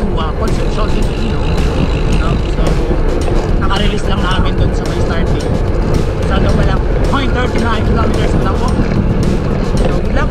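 Wind rumbling steadily on the microphone of a handlebar-mounted camera on a moving bicycle, with music over it.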